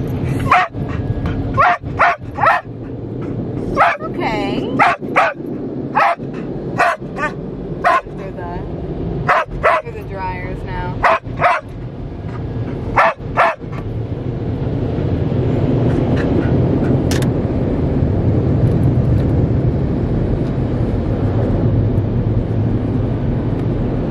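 Australian cattle dog (blue heeler) barking and yipping inside a car, a string of about eighteen short, sharp barks over the first thirteen seconds or so. After that a steady low rumble takes over and grows a little louder.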